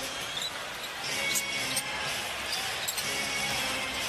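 Arena crowd noise with a basketball being dribbled on the hardwood court, a few sharp bounces.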